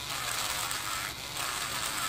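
Electric nail drill with a ceramic bit running and grinding polish off an acrylic nail: a steady motor hum under a gritty scratching.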